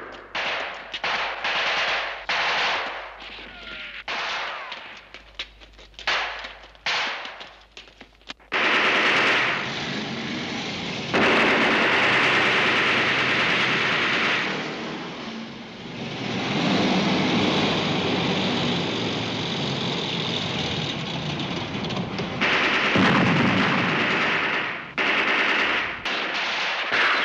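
Battle gunfire from rifles and machine guns. For the first eight seconds or so it comes as separate sharp shots and short bursts. Then it becomes a loud, continuous, dense din of firing.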